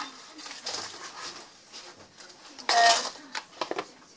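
Items being handled and packed into a bag: rustling and small knocks, with one louder sharp clink that rings briefly about three seconds in, followed by a few quick knocks.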